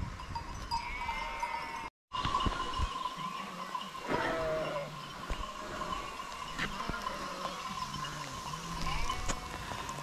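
A flock of sheep grazing in the rain: several short low bleats and the clink of sheep bells over the steady hiss of falling rain.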